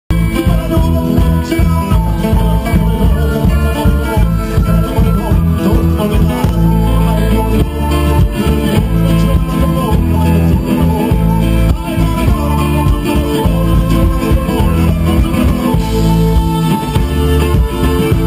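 A live band playing amplified through a stage sound system: accordion, violin, clarinet, acoustic guitar and bass guitar together, with a heavy, steady bass.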